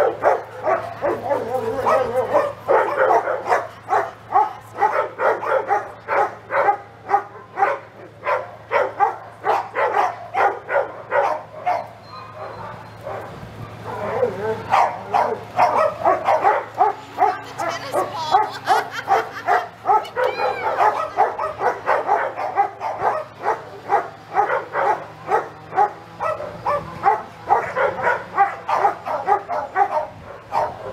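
Dogs barking over and over, about three barks a second, pausing briefly about twelve seconds in before starting up again.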